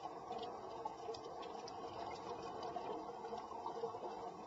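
Faint underwater ambience: a low, steady rush with scattered faint clicks.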